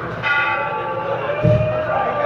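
A metal bell struck once, ringing on and slowly fading, then a deep drum beat about a second and a half in.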